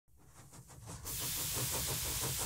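Steam hissing, fading up and growing louder from about a second in, after a faint rapid ticking in the first second.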